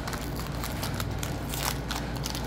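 Foil wrapper of a Pokémon TCG booster pack crinkling and crackling as it is torn open by hand.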